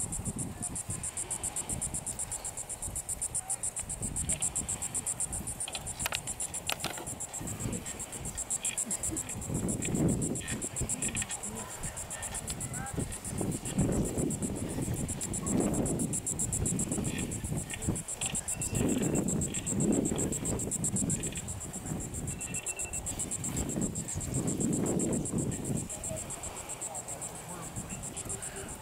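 Chorus of insects in the dune grass, a steady, high, rapidly pulsing trill, with low muffled rumbles swelling up several times.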